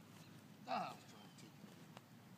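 A short, high-pitched vocal exclamation from a person about three quarters of a second in, over faint background chatter.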